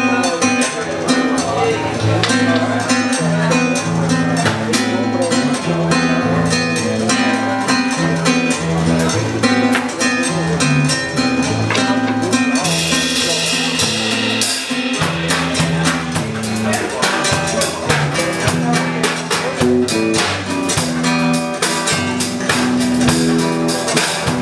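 Instrumental passage of a bolero on acoustic guitar and electric bass with drums, a walking bass line under a steady rhythm; a bright cymbal-like wash rises about twelve seconds in.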